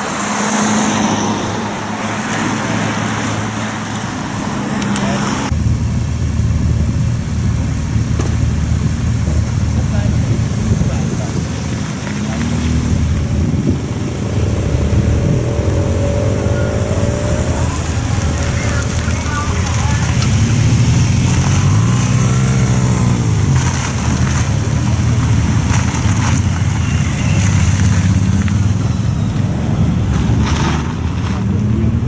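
Race convoy vehicles passing close by: cars and motorcycles running, their engine notes rising and falling as they go past, over steady road noise. The sound changes abruptly about five seconds in.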